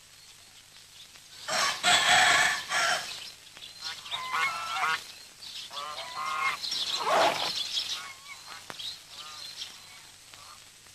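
Farmyard fowl calling at daybreak: a rooster crowing and geese honking, in several calls over a few seconds, the loudest about two seconds in.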